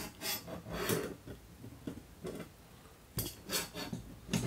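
Small clicks and scraping of parts being handled: a steel ruler and the front takedown pin working against an AR-15 lower receiver while the spring-loaded takedown pin detent is pushed back into its hole. The clicks are scattered, with a couple of sharper ones near the end.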